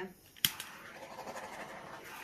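Handheld butane torch clicked alight about half a second in, then burning with a steady hiss as it is passed over the resin to pop surface bubbles.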